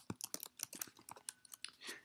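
Typing on a computer keyboard: a quick, irregular run of faint key clicks as a line of code is typed.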